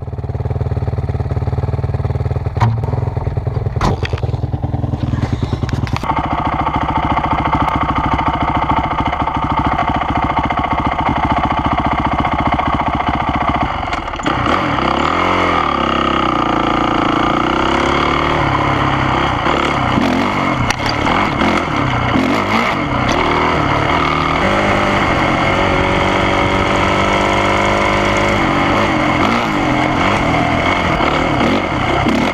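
Dirt bike engine heard from a camera mounted on the bike. It idles with a fast, even beat, picks up to higher revs about six seconds in, then revs up and down as the bike rides off, with the pitch climbing in repeated sweeps near the end. A couple of sharp knocks come early on.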